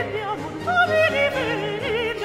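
Countertenor singing a Baroque opera aria with orchestra. A held note with vibrato gives way to a run of quick separate notes up and down, then settles on another note with vibrato near the end, over steady low accompaniment.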